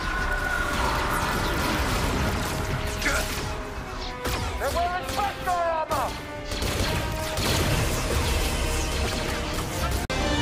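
Film battle sound mix: repeated blaster shots and impacts over an orchestral score, with a cluster of short swooping whistles around the middle.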